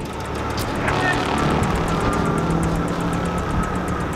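Surfing-film trailer soundtrack played through a hall's speakers: a steady rushing of heavy surf, with a held low drone and a higher held tone entering about a second in.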